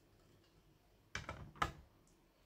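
Hard plastic PSA grading slabs clacking as one is handled and set down with the others. A short run of light clicks comes a little over a second in and ends in a sharper click.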